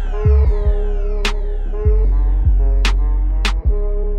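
Electronic outro music with a heavy bass line and a drum beat of kick drums and sharp snare hits, opening with falling synth sweeps.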